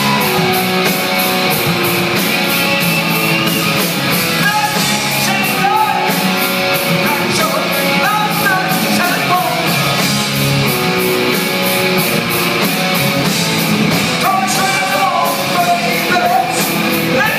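A rock band playing live at full volume: electric guitar, bass and drums with a male lead vocal over them, the drums keeping an even beat.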